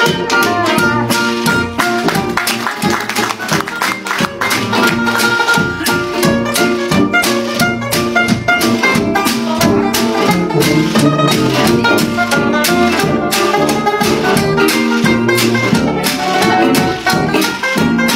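Traditional New Orleans jazz band playing an instrumental passage live: cornet, clarinet and trombone over a steady strummed beat from tenor banjo and guitar, with tuba bass.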